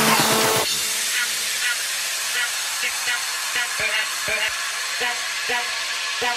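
Breakdown of an electronic dance track. About half a second in, the bass and drums drop out, leaving a steady hiss of white noise. Short chopped vocal blips come faster and faster over it towards the end, as a build-up.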